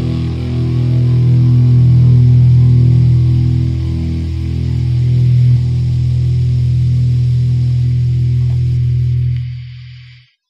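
The last chord of a distorted rock song, a low note held and ringing out with a steady hum, fading away to silence near the end.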